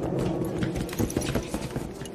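Footsteps of several people walking on a hard, polished floor: a quick, irregular run of hard heel strikes, a few each second.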